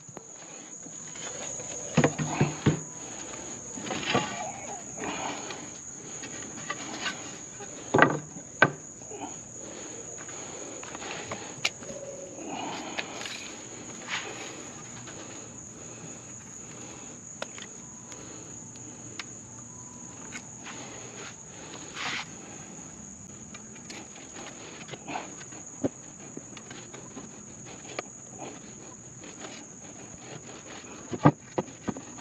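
A steady high-pitched insect drone throughout, with wooden boards being handled and knocked on a wooden deck; the sharpest knocks come about 2 and 8 seconds in.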